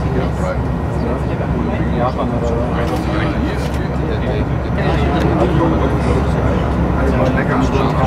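Steady low running rumble inside the driver's cab of an ICE high-speed train travelling along the line, with indistinct voices talking over it.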